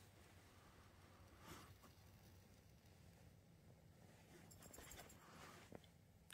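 Near silence: faint background hiss, with a couple of barely audible ticks near the end.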